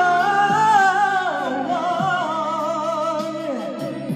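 A male singer holds one long high note of a ballad over a backing track, dropping in pitch about a second in and then wavering with vibrato before fading near the end.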